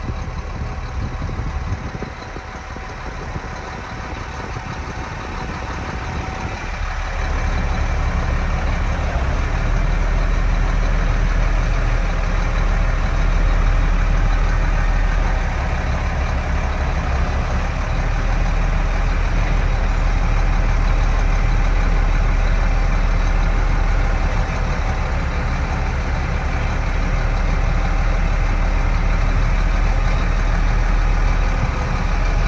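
1994 Case IH 7220 Magnum's six-cylinder diesel running, heard from inside the cab. About seven seconds in the engine gets louder and heavier and stays there while the front loader is worked.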